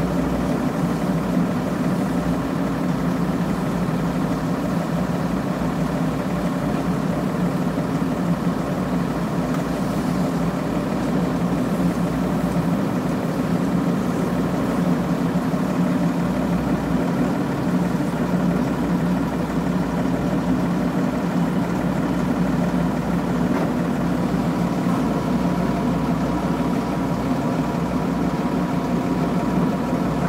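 Heavy diesel engine running steadily at an even speed, heard from inside an excavator cab.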